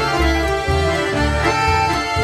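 Live chamamé played by an accordion ensemble with cello and double bass: held accordion chords over low bass notes that change about twice a second.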